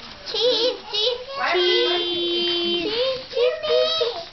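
Children singing in wobbly, wavering sing-song voices, with one long held note in the middle.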